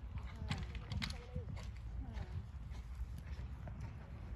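Horse's hooves striking a sand arena surface at a trot, a run of soft thuds, with indistinct voices in the background during the first half.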